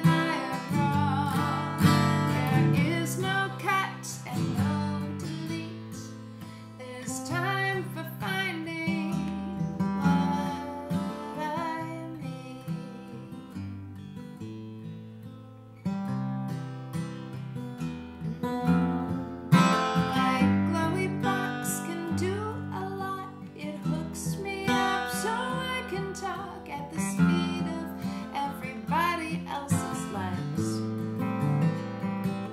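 Steel-string acoustic guitar playing an instrumental passage of a song, with a woman's wordless singing at times. The guitar grows quieter toward the middle, then comes back in stronger about halfway through.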